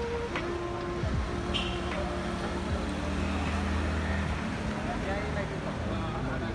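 City street traffic: car engines running steadily, with people's voices in the background.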